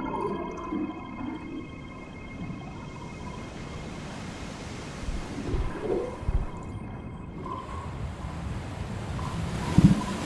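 Surf and rushing water noise with a faint held tone, part of the film's soundtrack. A higher drone fades out in the first second. A few deep thuds come through: two near the middle, and the loudest just before the end.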